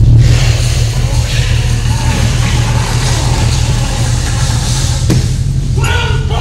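Theatrical sound effect: a loud, steady deep rumble with a rushing hiss over it, starting abruptly, with a single click about five seconds in.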